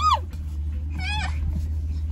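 A toddler's two short, high-pitched whining cries, one at the start and a higher, wavering one about a second in, over a steady low hum.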